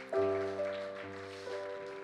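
Soft keyboard music: a sustained chord with a low bass note, struck just after the start and slowly fading, with a small change of notes about one and a half seconds in.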